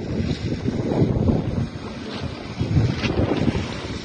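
Wind buffeting a phone's microphone, an uneven low rumble that swells and falls.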